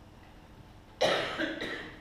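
A person coughing twice in quick succession, starting suddenly about halfway in; the first cough is the louder.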